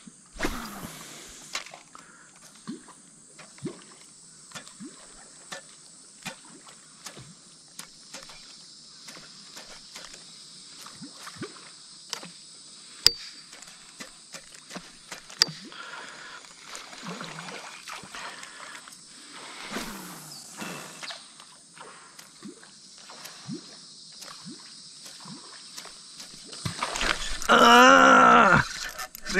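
Light water sloshing and small splashes around a fishing kayak on calm water, with scattered short knocks, over a faint steady high-pitched insect buzz. Near the end a louder burst of noise comes in.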